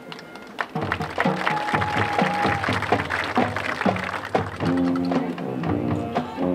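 High school marching band playing its field show: after a soft passage, the full band of brass and drums comes in loudly about a second in and plays on with sharp drum strikes.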